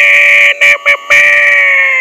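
A man's voice holding one long, high, steady note into a microphone. It breaks off twice briefly in the first second, then sags and fades at the end.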